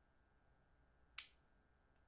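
A single sharp finger snap about a second in, against near-silent room tone.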